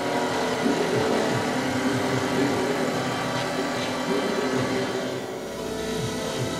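Experimental musique concrète / noise music: a dense, steady wash of many sustained tones layered over hiss, with no beat.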